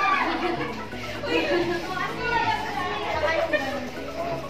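Excited chatter of several people talking and exclaiming over one another, with high-pitched voices.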